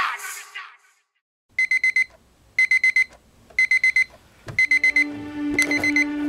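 Alarm clock beeping: five bursts of rapid high beeps, one burst a second, starting about a second and a half in.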